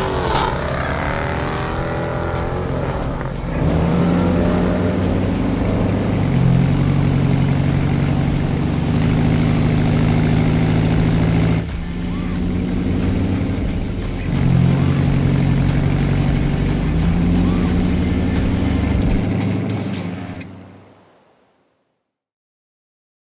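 Straight-piped 2015 Dodge Challenger R/T Hemi V8 doing a burnout, with engine revs and tyre squeal rising and falling. From about three seconds in, music with a steady, stepping bass line carries on over the car and fades out near the end.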